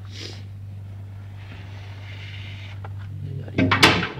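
Hot-air SMD rework station running: a steady low hum with a soft hiss of blown air in the middle, then a brief knock of handling noise near the end.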